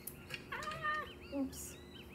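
Birds chirping in the background in quick repeated short chirps, with a louder pitched call about half a second in. A few light clicks and a brief scrape come from utensils on the counter.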